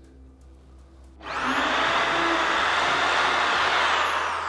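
Dexter electric drill starting about a second in with a rising whine, then running steadily as it bores a 3 mm pilot hole into a block of wood. Its whine begins to fall near the end as the motor slows.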